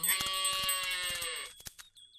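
A calf bleating once: one long call of about a second and a half that drops slightly in pitch at the end.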